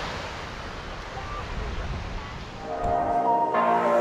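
Steady rushing of surf washing onto a sandy beach. About three seconds in, electronic outro music fades in over it.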